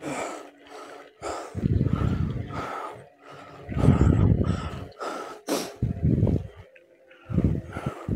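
A woman breathing heavily close to the microphone, about five loud breaths a second or so apart, with low rumbling gusts on the mic.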